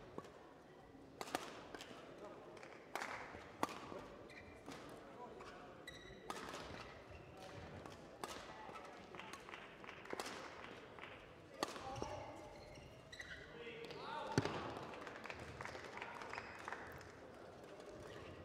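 Badminton doubles rally: racket strikes on the shuttlecock heard as faint, sharp cracks at irregular intervals, about one to three seconds apart, with movement on the court between them.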